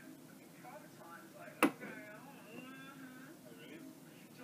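Faint speech from a television playing in the background, with one sharp click about a second and a half in.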